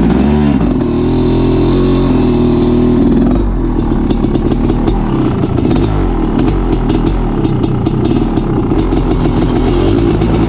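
Honda CR500 two-stroke single running under way off-road. The revs dip and pick up again just after the start, hold steady, then ease off about three and a half seconds in, with quick clicks over the rest.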